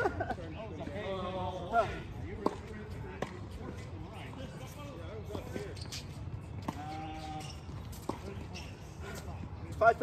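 A tennis ball bounced on a hard court before a serve: scattered sharp knocks, with short stretches of voices now and then.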